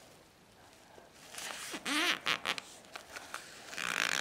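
Origami paper being folded and creased by hand: bursts of rubbing and rustling from about a second in, with short squeaky glides near the middle.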